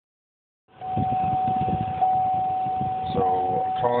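A single steady high-pitched tone starts suddenly about a second in and holds at one pitch, over low, irregular rustling. A man starts speaking near the end.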